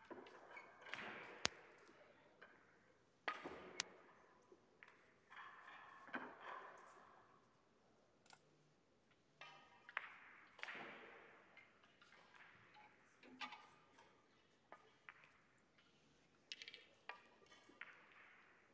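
Faint, scattered clicks of pyramid billiard balls knocking together as they are gathered and racked for the next frame, with soft handling noise in between.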